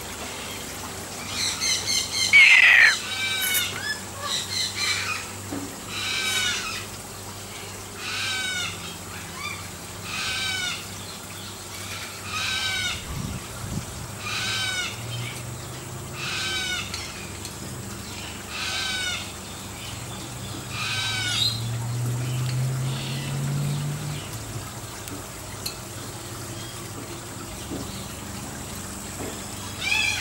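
Caged white cockatoo calling over and over, one short call about every two seconds, with a louder, harsher squawk near the start.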